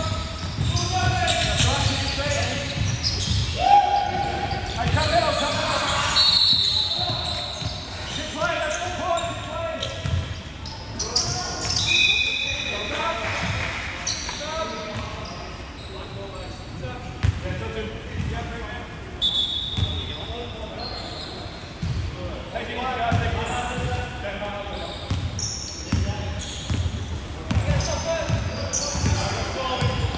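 Basketball bouncing on a hardwood court, with players' voices calling out, echoing in a large hall. A few short high squeaks, typical of sneakers on the floor, come about 6, 12 and 19 seconds in.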